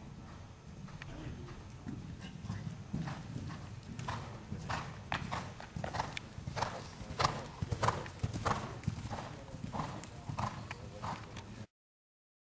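Hoofbeats of a Westphalian gelding cantering on soft arena footing, growing louder a few seconds in as the horse comes closer, then cutting off suddenly near the end.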